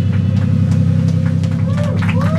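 Amplified guitar and bass holding a low ringing drone as the song ends, without drums, with audience voices whooping and shouting over it near the end.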